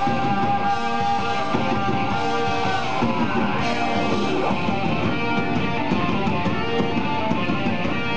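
Heavy metal band playing live, electric guitars carrying a melodic line over bass and drums.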